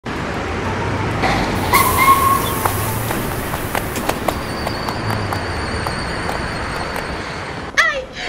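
Steady street traffic noise, with scattered clicks, a short high tone about two seconds in and a thin high whine through the second half.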